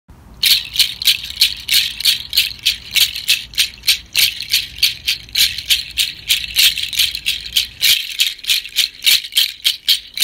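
A hand rattle shaken in a steady rhythm, about three shakes a second, starting about half a second in.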